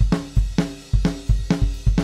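Raw, unmixed recording of a rock drum kit playing back, with kick drum hits about three to four a second along with snare and cymbals.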